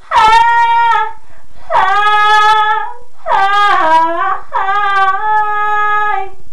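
A woman singing a capella, belting four long held notes without words, the third sliding through a run of pitch changes. The voice is loud and bright.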